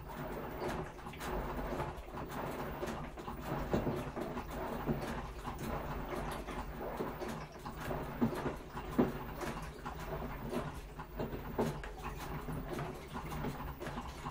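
Washing machine in its wash cycle: the drum turning, with laundry and water tumbling and knocking irregularly over a low motor hum.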